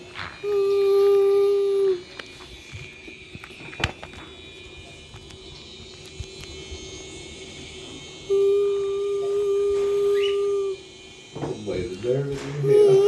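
A person humming two long, steady held notes, one near the start and a longer one about eight seconds in, in the manner of a subway train horn. A single sharp click falls about four seconds in.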